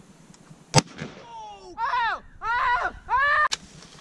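A single .30-06 rifle shot, a sharp crack just under a second in, followed by about two seconds of excited whooping voices in four rising-and-falling calls, and two sharp clacks near the end.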